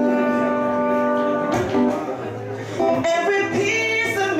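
A man singing live into a handheld microphone, holding one long note for about a second and a half and then moving through shorter notes, over acoustic guitar accompaniment.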